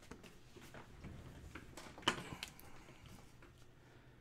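Hands handling small things on a desktop: faint rustles and light knocks, with one sharper click about two seconds in.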